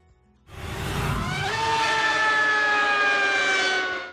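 Edited transition sound effect: a swelling whoosh with a steady whine that drifts slightly down in pitch, cutting off abruptly at the end.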